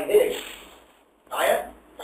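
A man speaking in a lecture: two short phrases with a brief pause between them.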